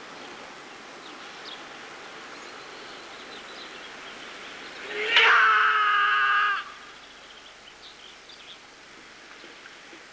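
A kiai shout from a swordsman performing a Jikishinkage-ryu hojo kata: one loud, steady, held cry that starts suddenly about five seconds in and breaks off about a second and a half later, over faint background noise.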